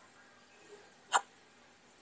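Quiet room tone broken once, about a second in, by a single short, sharp click-like sound.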